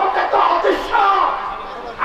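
A man shouting into a handheld microphone over a public-address system, with many voices from the crowd joining in.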